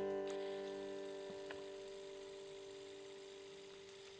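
A G chord on a steel-string acoustic guitar ringing out and fading away slowly after being struck. A faint click comes about a second and a half in.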